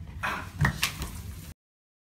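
Two sharp knocks about a quarter of a second apart over low hallway background noise, then the sound cuts off abruptly about one and a half seconds in.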